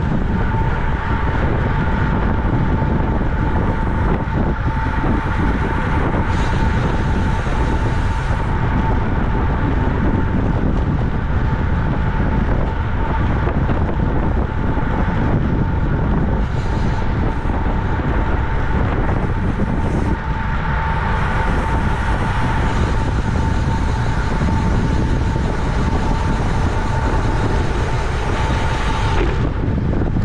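Wind rushing over the microphone of a camera on a road bike moving at around 25 mph, a loud steady roar, with a thin steady whine running through it.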